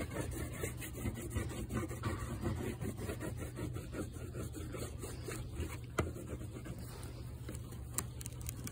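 White wax crayon rubbing on watercolour paper in short, irregular strokes, with one sharp click about six seconds in.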